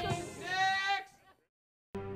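A person's voice holding a high, drawn-out note for about half a second, then a cut to silence; music begins right at the end.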